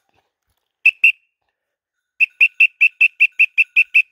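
High-pitched signal toots for calling a hunting dog: two short toots about a second in, then a rapid, even run of about a dozen pips at about six a second, all on one steady pitch.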